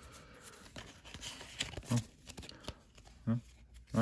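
Pokémon trading cards being handled and slid through in the hands: soft card rustling with a few light flicks, and two short vocal murmurs, one about halfway and one near the end.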